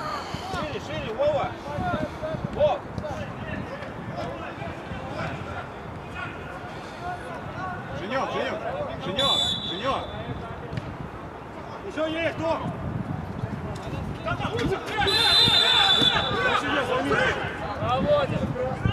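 Indistinct shouts and talk of players across a football pitch, with two blasts of a referee's whistle: a short one about nine seconds in and a longer, louder one about fifteen seconds in.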